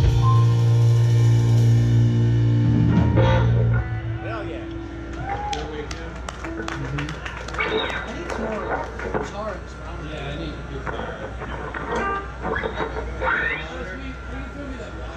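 Rock music with guitar and drums, which cuts off about four seconds in, followed by a murmur of voices with scattered clicks and knocks.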